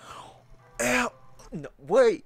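A man's startled vocal outbursts: a sharp, breathy exclamation about a second in, then short voiced cries that rise and fall near the end.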